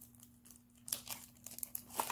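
Packaging crinkling as it is handled: quiet at first, then sharp crackles from about a second in. A faint steady hum runs underneath.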